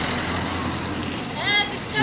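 A car passing close by on the street, a steady rush of tyre and engine noise, with a short voice near the end.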